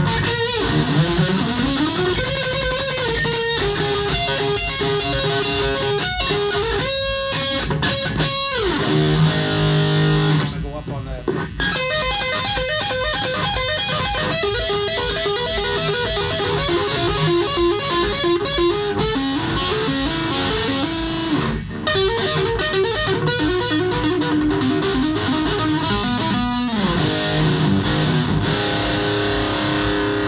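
Electric guitar played through an Orange Crush Micro amp into a 4x12 cabinet: single-note lead lines with held, sustaining notes and several slides, in an overdriven, compressed tone. It pauses briefly about ten seconds in.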